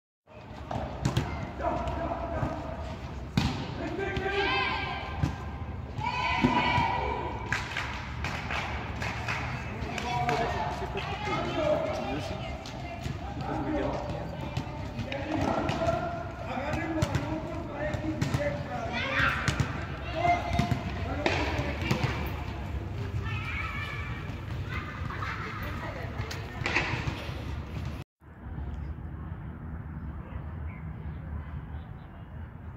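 Chatter of a crowd, many voices talking and calling out over one another, with scattered thuds of impacts among them. The sound drops out for a moment about 28 seconds in.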